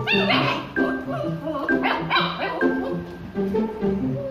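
Background music, with a dog barking twice over it: once about half a second in and again about two seconds in.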